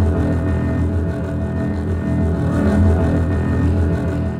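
Improvised music from electronics, guitar and double bass: a steady low drone with held tones above it.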